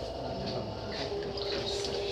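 Wet hands working clay on a spinning potter's wheel, a soft watery swishing of slip. A steady hum comes in about halfway through.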